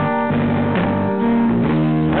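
Instrumental band music in a gap between sung lines: a guitar chord struck at the start, then held guitar notes over a bass line, moving through several notes.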